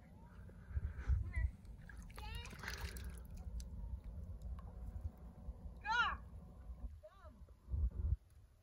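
Lake water sloshing and splashing around the legs of someone wading knee-deep, under a steady low rumble, with a few short voice sounds.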